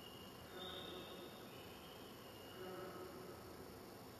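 Faint buzzing tones from a gallery sound installation's hanging speakers. The tones hold a steady pitch, each lasting about a second, and come one after another with some overlap.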